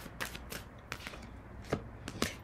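Tarot cards being shuffled by hand and a card laid down: a few separate light card snaps and taps, the sharpest near the end.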